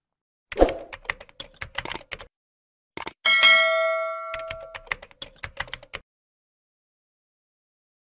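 End-screen subscribe-button sound effects: a run of quick clicks, then a bell-like ding about three seconds in that rings out for about a second, then another run of clicks.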